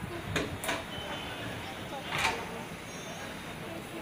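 Passenger train coaches rolling slowly past, a steady rumble with three sharp clacks, the loudest about two seconds in, and faint voices in the background.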